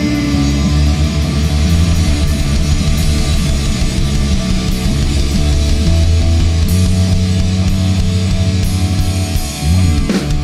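Live punk rock band playing an instrumental passage with no vocals: loud distorted electric guitars, bass guitar and drum kit.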